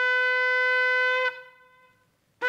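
A shofar sounding one long, steady blast that stops a little over a second in.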